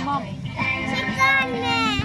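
A children's song with a high, child-like singing voice playing from a coin-operated kiddie ride's speaker.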